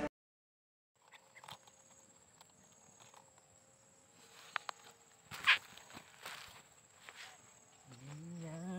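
After about a second of silence, faint outdoor ambience with a steady thin high tone, and scattered soft footsteps and rustles of sandals on leaf litter and twigs, the loudest about five and a half seconds in.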